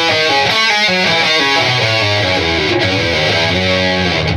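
Ibanez electric guitar playing a fast, country, Nashville-sounding single-note riff with pull-offs, a quick unbroken run of stepping notes.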